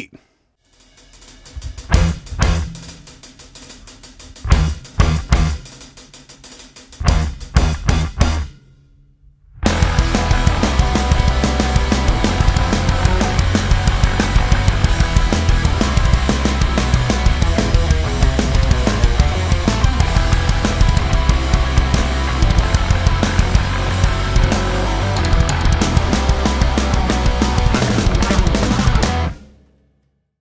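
Metal band playing: drums, bass and distorted electric guitar through a Peavey 5150 tube amp, miked with an SM57 on a Mesa 4x12 with no EQ. It opens with stop-start hits separated by gaps, then from about ten seconds in the full band plays a dense, continuous riff, which cuts off near the end.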